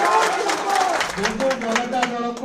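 A man speaking Odia into a handheld microphone, with scattered claps behind him during the first part.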